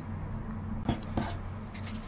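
Faint handling noise from a crochet hook and crocheted pieces being picked up off a table: a few light clicks, about one second in and again near the end, over a low steady hum.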